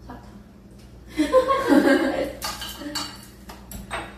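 A short burst of voice, then a string of light clicks and clinks of chopsticks and dishes on the dining table.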